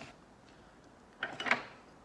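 Two short knocks close together a little past the middle, as small plastic and metal roller-blind parts are handled and picked up from a tabletop.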